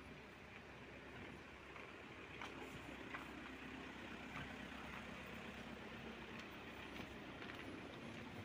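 Faint outdoor background noise: a steady low hum under a soft hiss, with a few faint clicks.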